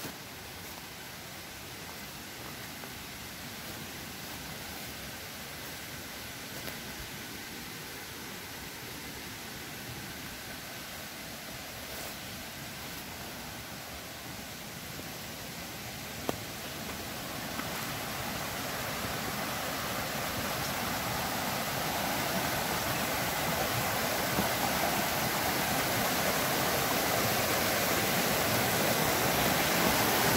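Shallow creek rushing over rocks: a steady hiss of running water that grows gradually louder as it comes closer. Two faint sharp clicks sound just past the middle.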